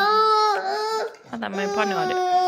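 Young child crying: two long, loud, steady cries, the first fading out about a second in and the second starting soon after.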